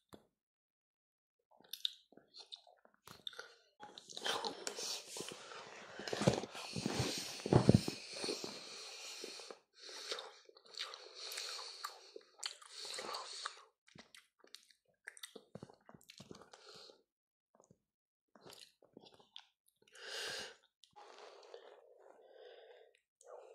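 Close-up chewing and mouth sounds from eating a piece of aerated peppermint chocolate. A long, loud, noisy stretch runs from about four to ten seconds in, with its loudest thump near the middle, followed by scattered short bursts of chewing.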